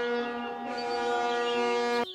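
Ship's horn sound effect: one long steady blast, rich in overtones, that cuts off suddenly at the end.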